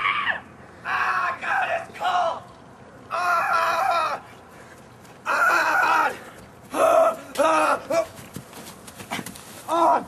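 A person's high-pitched wordless cries, about eight of them, short and longer, several sliding down in pitch at the end.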